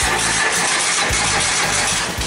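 A car's starter cranking the engine for its first start after the fuel injectors were refitted, steady and loud. The fuel line is empty of gasoline, so the engine is slow to catch.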